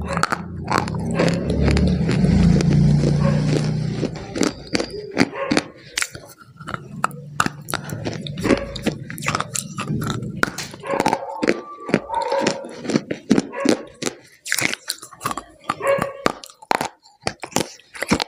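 Close-miked biting and chewing of a hard, brittle white block, heard as a run of sharp crunches and crackles, several a second. The first few seconds also carry a low hum-like mouth or voice sound under the crunching.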